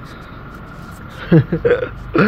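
A quiet pause with faint background noise, then a man's voice: a short untranscribed utterance about a second and a half in.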